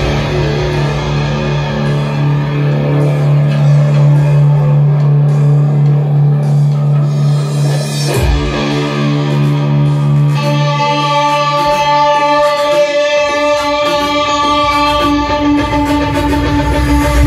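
Electric guitar played live through an amplifier at the start of a fast punk song: long held low notes for the first eight seconds, then a change, with higher steady tones joining about ten seconds in.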